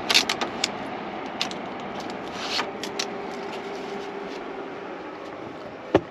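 EcoFlow Wave 2 portable air conditioner running steadily in cooling mode just after kicking on, its fan blowing with a faint steady hum. A few short scrapes and rustles of handling, with tape being peeled off the front vent, come in the first three seconds.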